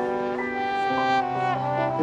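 Marching band brass playing held chords, the notes moving to new pitches every half second or so.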